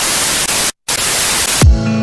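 Harsh TV-static hiss of a glitch transition effect, cut off briefly for a moment partway through. Near the end, music starts with a deep beat that falls in pitch.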